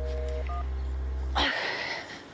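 Telephone line tone beeping in the handset after the other party hangs up: short two-note beeps over a low steady hum. About a second and a half in, the hum cuts off and a short rush of noise follows.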